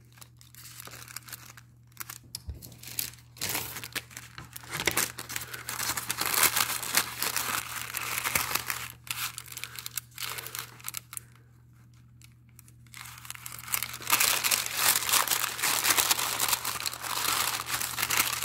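A sheet of white paper crinkling and rustling as it is handled, torn and smoothed down by hand, in stretches with a brief lull about two-thirds of the way through.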